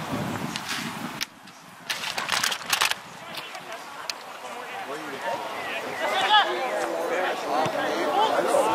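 Footballers' shouted calls during play, rising to a run of calls in the last few seconds, with a brief cluster of sharp knocks about two seconds in.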